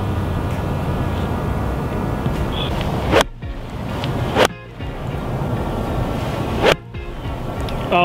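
Golf iron striking a ball three times in the second half, a sharp crack roughly every one to two seconds, each cut off suddenly. Under it is a steady rushing background.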